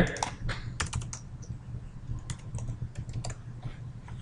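Keys tapped on a computer keyboard in short, scattered runs of clicks, as a block of code is pasted and spaced out.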